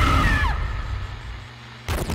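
Trailer sound design: a loud low impact with a deep rumble that slowly fades, and a high pitched tone that bends down and cuts out about half a second in. Near the end comes a short burst of VHS tape static.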